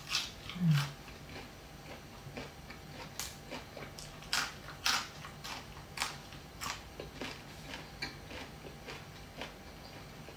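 Close chewing of a mouthful of fresh leafy greens wrapped around a fish salad: irregular crisp crunches, a few a second. One short low vocal sound comes about a second in.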